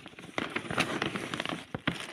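Tissue paper crinkling and rustling in a cardboard box as it is handled: a run of irregular crackles.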